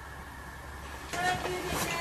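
Low steady room hum, then about a second in a doorbell chimes with a higher note falling to a lower one, the signal of a caller at the door.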